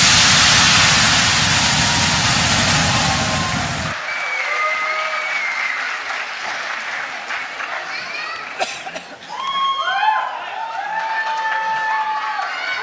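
Audience applause and cheering in a large hall as a pop dance track ends; the music cuts off abruptly about four seconds in, leaving thinner clapping and scattered voices calling out near the end.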